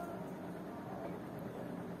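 Room tone: a steady, faint background hiss with no distinct events.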